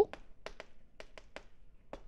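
Chalk writing on a chalkboard: a run of short, irregular taps and scratches as each stroke is made.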